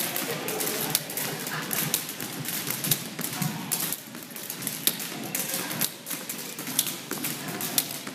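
Several beaded jump ropes slapping a wooden gym floor as people skip, with sneakers landing: many sharp, irregular clicking taps overlapping one another.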